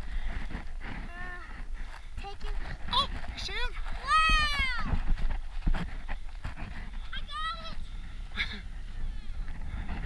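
A child's high-pitched wordless cries and squeals, several short ones rising and falling in pitch and the longest a little after four seconds in. Wind buffets the microphone throughout.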